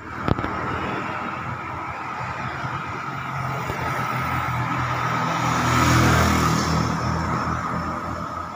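Road traffic passing: motorcycles and a car drive by, their engine and tyre noise building to its loudest about six seconds in and then easing off. A brief click comes just after the start.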